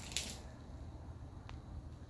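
Faint handling noise from a phone being moved in among tomato plants: a brief rustle just after the start and a single click about a second and a half in, over a steady low hum.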